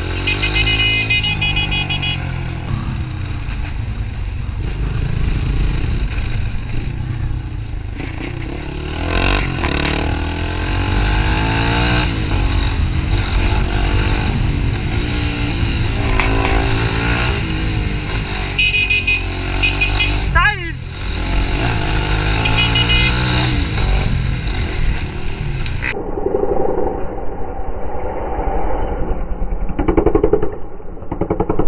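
Small motorcycle running under way, recorded from the rider's position with heavy wind rush on the microphone; the engine note rises and falls as the rider speeds up and slows. A short rising sweep sounds about twenty seconds in.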